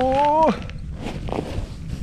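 A man's drawn-out, rising "ohh" of delight, cut off about half a second in, followed by crunching and shuffling in packed snow.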